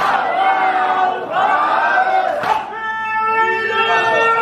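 A crowd of men chanting a Shia mourning chant together in long held notes, with a loud slap of many hands striking chests in unison about halfway through.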